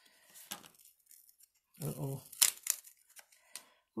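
A patterned paper panel being peeled up off a card base where it was stuck down, with a few short rasping tears, the loudest about two and a half seconds in.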